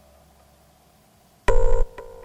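A short, loud electronic buzz with a rapid flutter, about a second and a half in, lasting about a third of a second.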